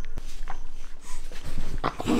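25-day-old Shiba Inu puppies making small puppy noises as they play-fight and bite at each other.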